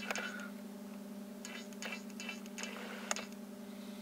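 Steady low hum with a few faint, scattered ticks.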